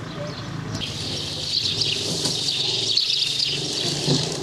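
Small birds chirping, many quick overlapping calls setting in about a second in, over a steady low background hum.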